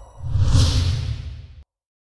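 A whoosh sound effect for a logo transition. It swells quickly about a quarter second in, with a hissy high rush over a deep low rumble, then fades and cuts off abruptly a little after a second and a half.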